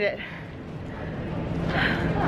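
Heavy, out-of-breath breathing after a run, with a breathy gasp near the end, over a low steady hum and murmur of an airport terminal.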